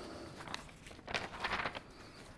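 A few soft clicks and rustles from handling a laptop, clustered in the second half.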